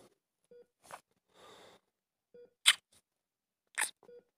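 A faint short beep recurs about every two seconds, like a hospital patient monitor. Several sharp clicks and brief handling noises come between the beeps, the loudest about two and a half seconds in and another near the end.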